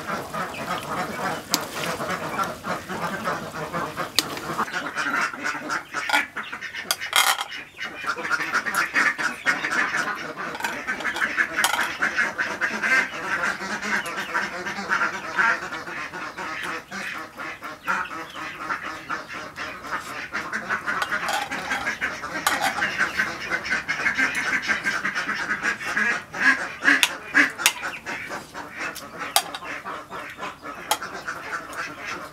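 A continuous chorus of animal calls with scattered sharp clicks, dipping briefly about a quarter of the way in.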